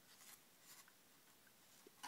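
Near silence, with a few faint rustles and a small click as a rubber band on a needle is worked through a paper crab claw.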